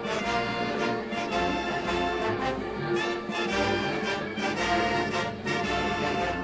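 Brass band march music playing steadily, with held brass notes.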